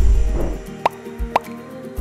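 Intro music for an animated logo: a deep bass hit at the start under held chords, then two short rising bloop effects about half a second apart.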